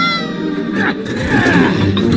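Animated-film soundtrack music, with a high, wavering cry that slides in pitch near the start and again about a second in.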